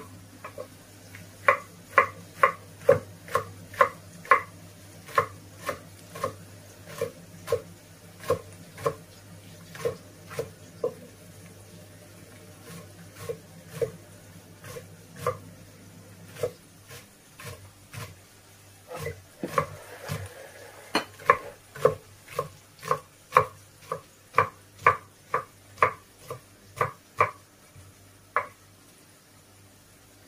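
Kitchen knife chopping green peppers on a wooden cutting board: crisp knocks of the blade on the board, about two a second, stopping briefly twice in the middle.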